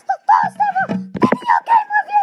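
A child's voice singing in a high, sing-song pitch, with a lower voice cutting in briefly about halfway through.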